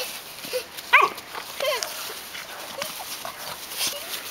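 A young puppy yelping and whining in rough play. There is a sharp, high yelp about a second in, then a shorter falling whine.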